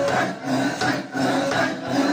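Handling noise: the phone's microphone rubbing and knocking against cloth as it is moved. The group's singing carries on faintly underneath.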